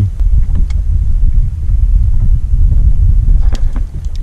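Wind buffeting the microphone on a small boat on open water: a loud, uneven low rumble with no steady engine tone, and a couple of faint ticks near the end.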